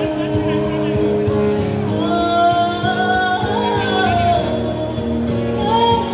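Live pop song: a woman singing into a microphone, holding long notes, over acoustic guitar accompaniment, amplified through a PA.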